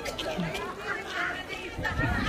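Background chatter: several people's voices talking over one another, with no clear words.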